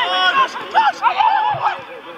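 Players shouting and calling to one another across the pitch, a loud call right at the start, then more voices about a second in.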